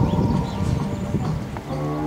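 Hoofbeats of a horse cantering on a sand arena, dull thuds in quick succession.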